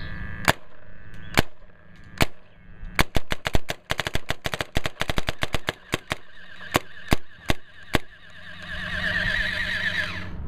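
Diablo paintball marker (Wrath body with Slayer parts) firing paintballs: three single shots, then a quick string of many shots over about three seconds, then four more spaced shots. Near the end a wavering electric whirr, typical of the Vlocity electronic hopper's feed motor.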